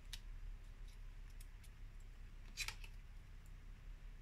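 Small craft scissors snipping card: a few faint, short snips, the clearest about two and a half seconds in.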